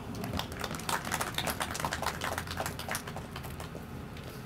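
A small crowd applauding with light, scattered hand claps that thin out near the end.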